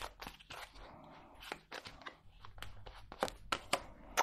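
Tarot de Marseille cards being handled in the hands: a deck split and shuffled with a run of light, quick card clicks and rustles, then a card laid on a wooden tabletop.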